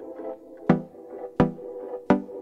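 An electronic loop played through FL Studio's Fruity Convolver, a convolution reverb loaded with a sample as its impulse: sharp hits about every 0.7 s, twice here, each trailing off in a pitched, ringing reverb tail. The lows are cut away by the convolver's EQ.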